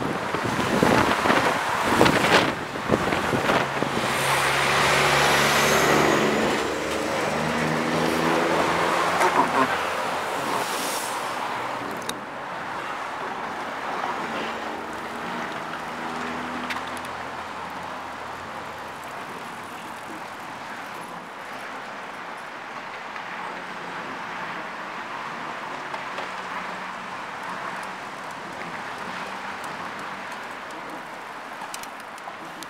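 Road traffic passing close by, with a vehicle's engine note rising and falling through the loud first part. About twelve seconds in the sound drops suddenly to a quieter, steady outdoor traffic hum.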